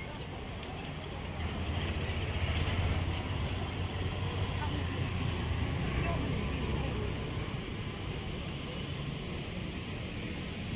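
Road traffic: a motor vehicle's engine passes close by, growing louder over the first few seconds and fading after about six seconds, over a steady background of traffic noise.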